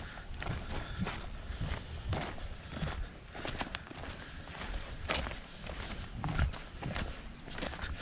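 Footsteps of two or three people walking on a dirt track, an irregular run of scuffs and crunches. Crickets trill steadily and thinly underneath.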